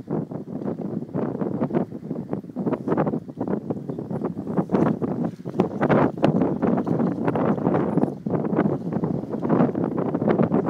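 Wind buffeting the camera's microphone: a continuous rumbling rush that surges and drops in quick, irregular gusts.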